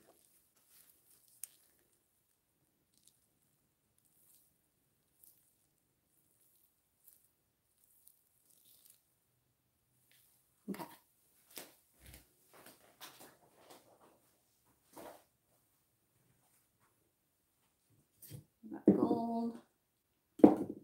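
Plastic acrylic paint bottles being picked up and set down on a table: a handful of light knocks and handling noises about halfway through, otherwise mostly quiet. A short voice sound comes near the end.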